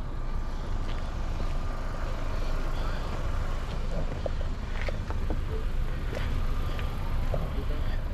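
Steady low outdoor background rumble with a few faint clicks.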